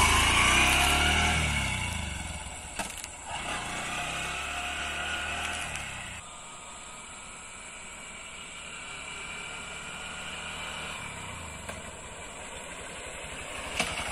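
A Honda Shine motorcycle's single-cylinder engine pulls away and fades into the distance, its note rising and dropping in steps as it shifts up through the gears. It grows louder again near the end as the bike rides back.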